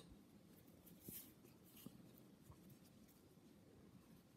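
Near silence, with faint rustling of fingers pushing fibre stuffing into a small crocheted cotton heart, a little louder about a second in.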